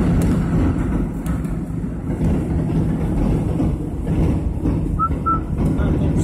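Inside a moving car: a steady low rumble of engine and tyres on the road. Two short high beeps sound about five seconds in.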